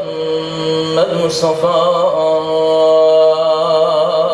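A man's unaccompanied religious chant: one voice holding long, ornamented melodic notes that waver up and down, in the melismatic style of Islamic recitation.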